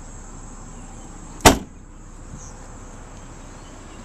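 Trunk lid of a 2006 Volvo S60 shut once with a single loud thump about a second and a half in.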